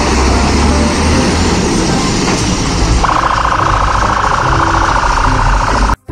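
A fire engine's diesel engine running loudly as it pulls out; about three seconds in, a high, rapidly pulsing siren tone starts and holds.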